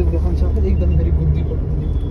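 Steady low rumble inside a car's cabin, with people talking quietly over it.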